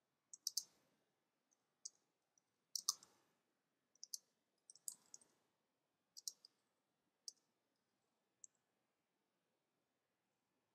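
Faint computer keyboard key clicks: a few keystrokes at a time with pauses between, as text is typed.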